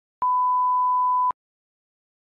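A single steady electronic beep, one pure tone about a second long, starting and stopping with a click.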